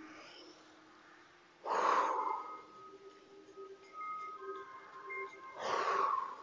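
A woman's forceful exhalations, two of them about four seconds apart, each breathed out as she pulls her elbows back in a standing rowing exercise. Faint background music underneath.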